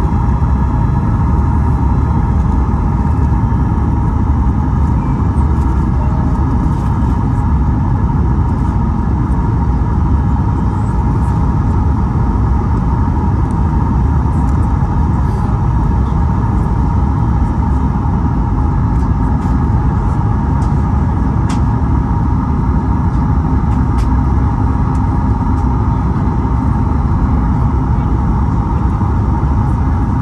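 Boeing 737-8 MAX cabin noise on final approach, from a window seat beside the CFM LEAP-1B engine: a steady deep rumble of engine and airflow with a steady whine above it.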